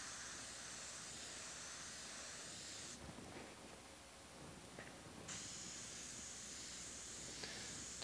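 Airbrush hissing steadily as it sprays paint, stopping about three seconds in for roughly two seconds, then starting again.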